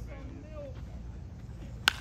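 A baseball bat striking a pitched ball: one sharp crack near the end, the loudest sound here.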